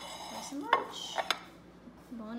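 A ceramic plate and a glass hot sauce bottle being set down on a countertop. A sharp clink rings briefly, followed by a few more knocks just under a second in.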